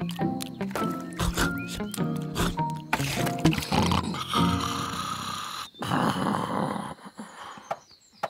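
Light cartoon background music with short plucked notes, then a cartoon gnome snoring: two long, noisy snores in the second half.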